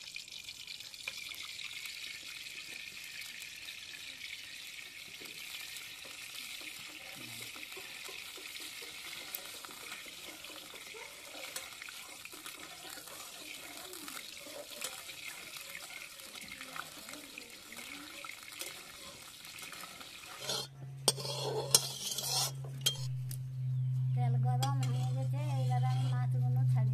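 Hot oil sizzling steadily in a pan as food fries. About twenty seconds in, the sizzling stops abruptly and gives way to a few sharp knocks and a steady low hum, with a wavering tone near the end.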